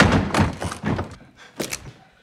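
Film soundtrack of a gunfight: a quick run of sharp shots and impacts, about five in two seconds, the first the loudest.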